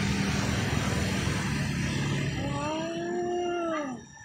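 A steady hiss and low hum, then near the end a long howl-like call about a second and a half long, its pitch rising and falling back, which breaks off as the hum drops away.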